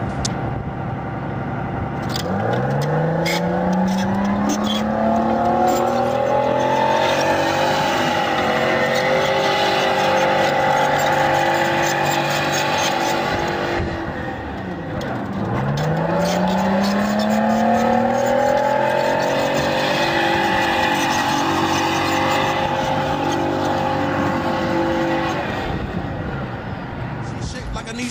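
M113 tracked armored personnel carrier pivot-steering in place, its engine revving twice. About two seconds in, and again about halfway through, the engine note rises in pitch, then holds high and steady while the hull swivels on its tracks, with a brief drop between the two turns.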